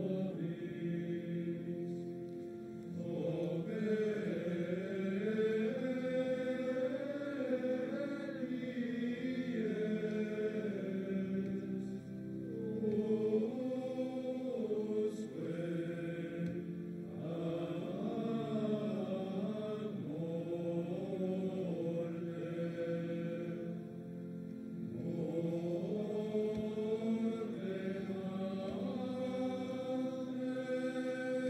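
Men's voices chanting together in a slow liturgical chant, sung in long phrases of several seconds with short breaks between them.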